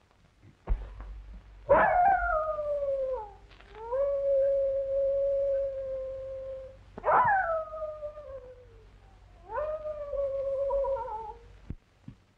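A dog howling three times: long howls that leap up and slide down in pitch, the first one holding a long steady note. A low hum runs underneath.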